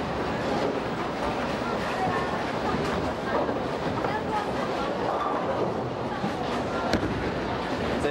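Bowling alley ambience: a steady wash of background voices and lane noise, with one sharp clack about seven seconds in.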